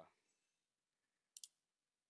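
A computer mouse button giving two quick, sharp clicks about one and a half seconds in, otherwise near silence.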